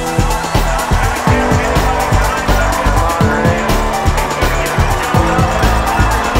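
Electronic music with a heavy, steady beat of deep bass drums.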